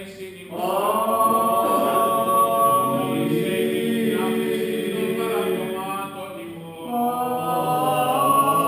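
Several voices singing Greek Orthodox Byzantine chant in long, held notes over a steady low note. The singing starts about half a second in, softens near six seconds and swells again about a second later.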